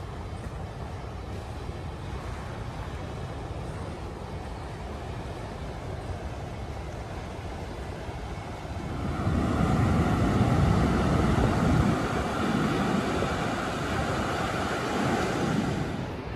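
Wind on the microphone over the wash of surf breaking on a rocky shore of rough sea, a steady noise that grows louder about nine seconds in.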